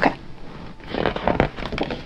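Paper page of a hardcover picture book being turned by hand: a short rustle and flap with a couple of soft knocks about a second in.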